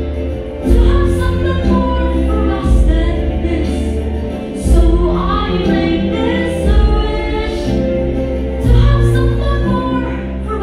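A boy singing solo into a handheld microphone over backing music, with a heavy bass line that changes note about once a second.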